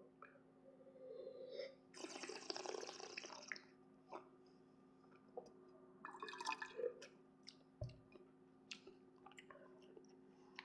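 Faint wine-tasting mouth sounds: wine slurped with air drawn through it over the tongue, then, about six seconds in, a shorter wet liquid sound with the mouth at a stainless-steel tumbler.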